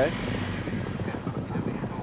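Hooves of a field of racehorses galloping on a dirt track, a dense, irregular thudding over a steady rumble.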